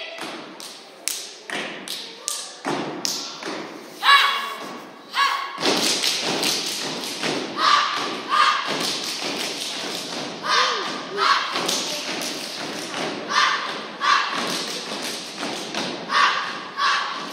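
Step team performing without music: sharp stomps and claps in a rhythmic routine, joined from about six seconds in by short shouted calls that come in pairs.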